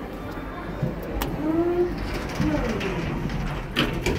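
Stannah passenger lift mechanism heard from inside the car: a click about a second in, then two short whines that bend up and down in pitch, and a sharp knock near the end.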